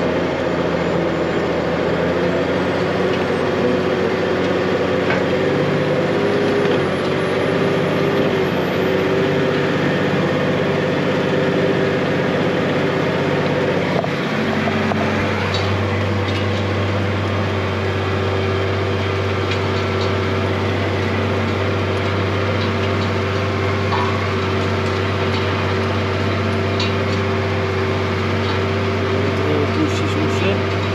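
New Holland tractor's diesel engine running steadily under load from inside the cab, pulling a disc cultivator through the soil. About halfway through, its low hum grows stronger.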